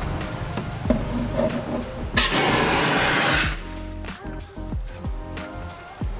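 CO2 fire extinguisher discharging in one short, loud hissing blast lasting about a second and a half, over background music.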